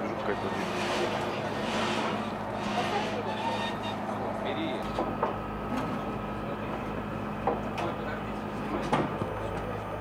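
Steady drone of a field bakery oven's machinery running, with a few sharp metallic knocks in the second half as bread tins are handled.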